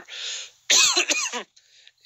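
A man coughing and clearing his throat: a breath in, then one harsh burst under a second long.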